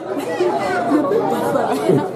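Several people talking at once: overlapping chatter of voices in a large room.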